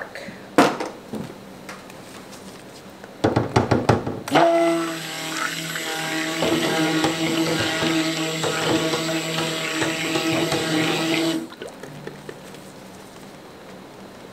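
Immersion (stick) blender running in a tub of thin soap batter for about seven seconds with a steady motor whine, after a few knocks as it is set into the tub. It cuts off suddenly. The blender is mixing in a whitener to lighten the batter, which is still thin at a light trace.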